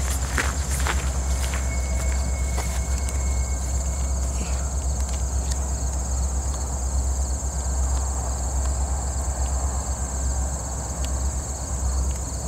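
A steady, high-pitched chorus of insects, such as crickets, calling in summer grass, over a steady low rumble.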